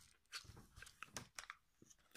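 Near silence broken by several faint, short clicks of hard plastic parts on a Titans Return Sixshot action figure as its black front pieces are handled and folded into place.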